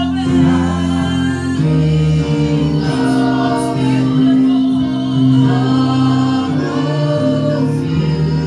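Gospel worship singing: a woman's voice sings into a microphone over long held chords that change twice.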